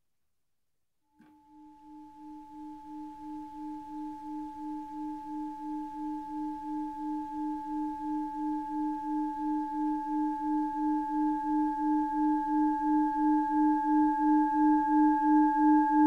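A sustained low ringing tone with fainter higher overtones, starting about a second in. It pulses about two to three times a second and swells steadily louder.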